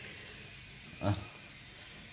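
Quiet room tone, broken once about a second in by a short voiced "ah" from a person.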